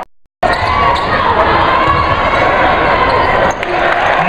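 A split second of silence at an edit, then live basketball game sound in a large gym: a crowd's voices and shouts echoing, with a basketball bouncing on the hardwood.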